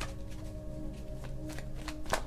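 Soft background music with long held notes, and a deck of oracle cards being handled and shuffled just out of view: a few crisp card flicks and snaps.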